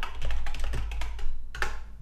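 Computer keyboard typing: a quick run of keystrokes, then one louder key press near the end.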